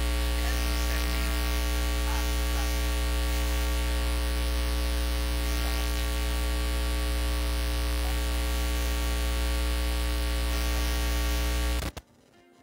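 Loud, steady electrical mains hum and buzz from an amplified sound system, deepest at the bottom and unchanging, which cuts off suddenly near the end.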